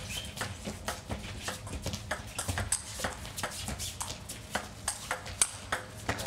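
Celluloid-plastic table tennis ball in a fast rally, ticking sharply off the rubber-faced rackets and the table two or three times a second.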